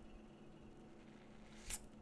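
Near silence: room tone, with one brief soft rustle near the end.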